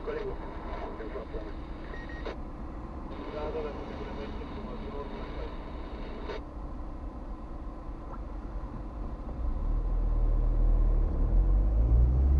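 Car engine and cabin rumble heard from inside a car idling at a stop, with a voice talking over it in the first half; from about three-quarters in, the low engine rumble grows much louder as the car pulls away.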